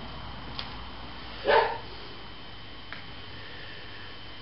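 A single short dog bark about a second and a half in, over a low steady room background.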